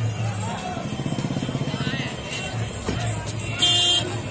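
Road traffic: vehicle engines running, with a fast engine flutter about a second in. A loud, shrill blast with several tones comes near the end.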